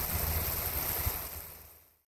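Pop-up spray sprinkler with a 360-degree nozzle hissing steadily as it sprays, over a low rumble, fading out in the last half second.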